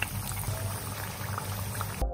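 Flat round of pathiri dough deep-frying in hot oil in a cast-iron kadai: a steady sizzle with scattered small crackles as it puffs, over a low steady hum.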